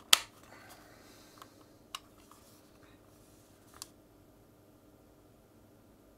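Plastic clicks as an Xbox One controller's shell is pressed back together by hand: one sharp click just after the start, then two fainter clicks about two and four seconds in.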